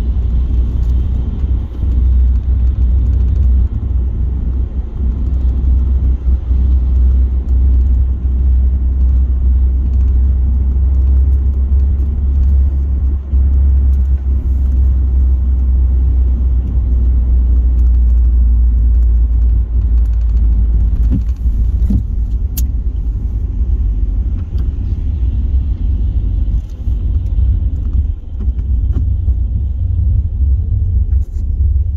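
Steady low road rumble of a car driving on a wet road, heard from inside the cabin, with a faint hiss of tyres on the wet surface. A single brief click sounds about two-thirds of the way through.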